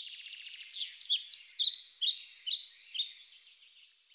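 Bird song: a rapid buzzy trill, then a run of quick, high chirping notes that fades out in the last second.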